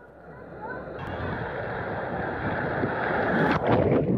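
Rushing water from a water slide, building steadily, then a sudden loud surge of splashing water about three and a half seconds in as the rider plunges into the pool.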